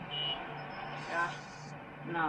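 Background electronic music bed under a TV title card: a low note pulsing several times a second, with a short high beep near the start and a brief snatch of voice about a second in.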